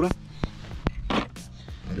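Three or four sharp clicks and a short rustle as plastic trim parts and the old transmission cooler's bracket are handled, over quiet background music.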